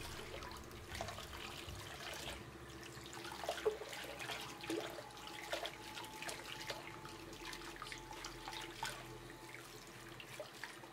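Cold water running from a tap into a bathroom sink while a soapy bucktail is rinsed under the stream by hand, with small irregular splashes. The rinse washes dishwashing detergent out of the deer hair.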